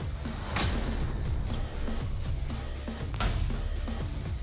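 Dramatic background music, with two sharp sword strikes into a hanging pig carcass, about half a second and three seconds in.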